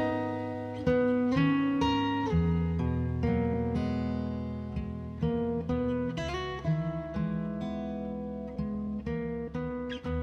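Instrumental hip-hop beat: a plucked guitar melody played note by note over a low bass line, with no vocals, slowly getting quieter.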